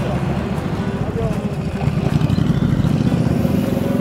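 Small motorcycle engine running steadily at low speed while the bike rolls along slowly.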